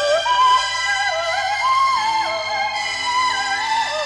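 Female vocal ensemble singing a slow melody in close harmony, the voices moving up and down together in steps. Low held notes of the accompaniment come in about halfway.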